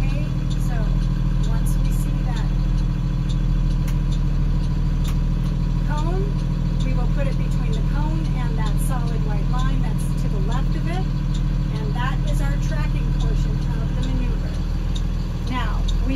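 School bus engine running steadily at low revs as the bus creeps forward through a cone maneuver, a constant low drone that doesn't change.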